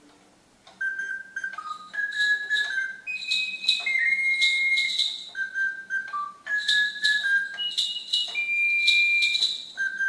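A high, pure whistle-like melody of short and held notes stepping up and down, starting about a second in, over a light, steady clicking beat.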